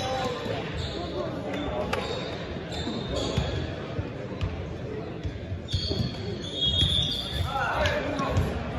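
Indistinct voices echoing in a large gymnasium, with a ball bouncing on the hardwood court as scattered knocks and a brief high-pitched squeal about seven seconds in.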